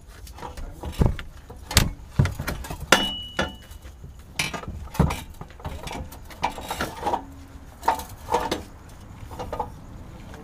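Hand tools and metal hardware clinking and knocking irregularly during work on a car's drivetrain from underneath, with several sharper knocks and a brief high ringing tone about three seconds in.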